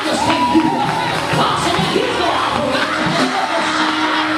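Worship music playing continuously, with many congregation voices calling out and singing over it.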